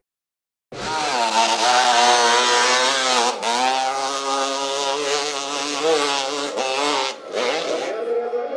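Off-road motorcycle engines revving hard on a steep dirt hill climb, the rear wheel spinning for grip. The sound begins after a short silence and the engine pitch wavers up and down, broken twice briefly.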